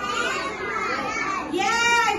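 Several children's voices speaking together at once, the words blurred, with one voice coming through clearer near the end.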